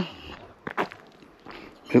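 Footsteps of a person walking on a loose gravel road, a few quiet steps between short spoken words.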